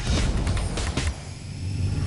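TV broadcast bumper sound: a loud low rumble with several sharp hits layered over music.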